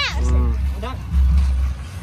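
A person's voice over a loud low rumble that swells and fades.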